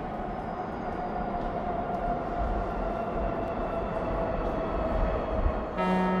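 Subway train rumble on the platform, with a steady whine that slowly falls in pitch. Music comes in right at the end.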